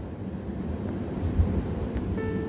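Low rumbling background noise on the microphone, with a brief louder bump about one and a half seconds in.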